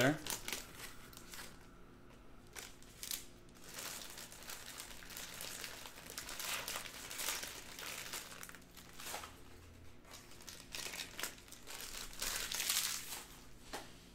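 Foil wrapper of a Panini Donruss Optic baseball card pack crinkling as it is torn open and handled, in irregular rustles that come and go.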